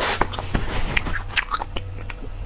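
Close-miked chewing of spicy braised beef bone marrow, with scattered short, sharp clicks.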